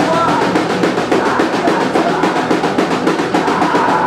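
Live rock band playing loud: the drum kit hammers out a fast run of even snare and drum strokes, a roll, under electric guitar.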